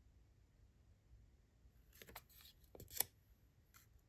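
Faint rustling and a few light taps of a paper word card being handled and put up on a whiteboard, bunched about two to three seconds in with one more near the end; otherwise near silence.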